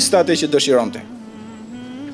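A man's voice: a few quick syllables, then one long steady held syllable for about a second.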